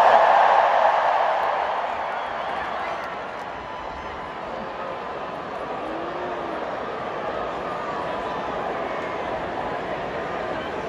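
A stadium crowd cheering, loudest at the start, dying down over the first couple of seconds into a steady hubbub of many voices.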